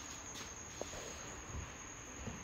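Faint, steady high-pitched whine over low room hiss, with one soft tick about a second in.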